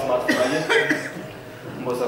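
A man's voice at a microphone: a few short broken utterances just after a sung passage ends, with a quieter gap about a second and a half in.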